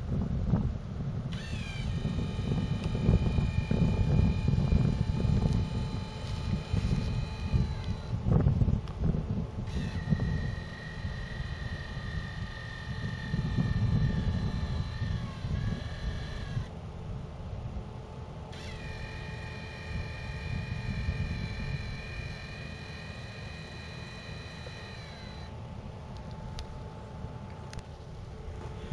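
Wind buffeting the microphone, with three spells of a high whine, each several seconds long, that slides down in pitch as it stops.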